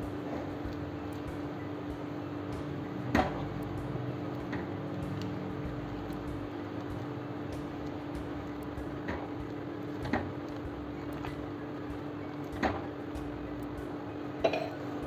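A wooden spatula stirs thick lemon pickle in a speckled non-stick pan, knocking against the pan a few times, over a steady low hum.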